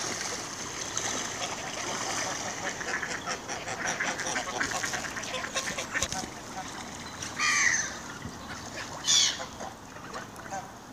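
A flock of mallard ducks quacking and splashing on the water, with geese among them; two louder bird calls stand out near the end.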